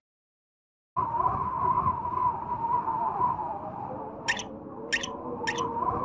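About a second of silence, then a steady wind-like cartoon ambience with a held hum. Three short, hissing high-pitched sound effects come about half a second apart near the end.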